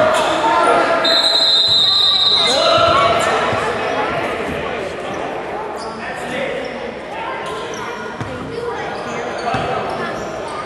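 A referee's whistle blown once, a steady high blast of about a second and a half starting about a second in, stopping play, over players' shouts echoing in a gymnasium. After it the gym is quieter, with scattered voices and knocks.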